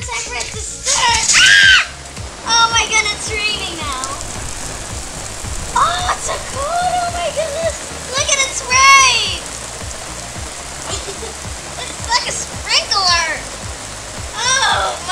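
Water from an inflatable unicorn spray pool's built-in sprayer pattering steadily onto the pool and patio, like rain on a surface. A child's high, excited squeals come and go over it several times.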